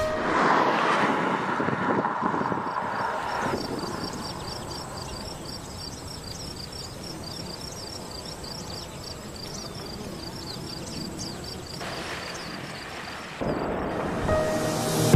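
Outdoor ambience with a faint steady hiss and a regular run of short high chirps, about four a second, from chirping insects. Music comes back in near the end.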